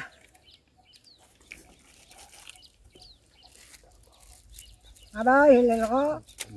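Mostly quiet for about five seconds with a few faint high chirps, then a rooster crows once near the end, about a second long, its pitch rising and wavering.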